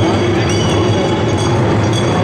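Ensemble of taiko drums played in a fast, continuous roll: a dense, steady rumble.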